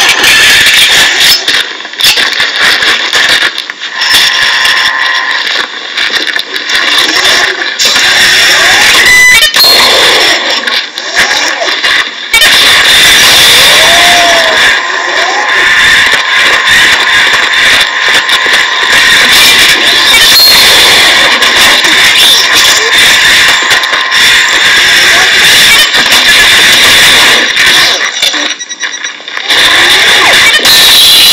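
Soundtrack of a video played through a smartphone's small speaker and picked up by the microphone: voices over background noise, loud and tinny.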